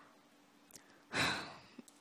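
A short breathy exhale, like a sigh, about a second in, with a faint click just before and just after it.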